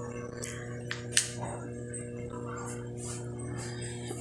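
A steady low hum with a few faint clicks and taps scattered through it.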